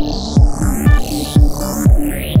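Electronic dance music with a deep kick drum on every beat, about two a second, and rising synth sweeps over it.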